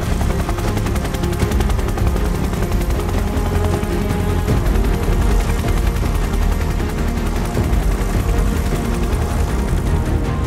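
Helicopter rotor blades chopping in a fast, steady beat, under background music.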